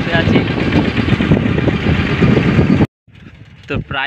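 Loud rumbling noise of a vehicle with voices under it, cut off abruptly about three seconds in, followed by short bits of voice near the end.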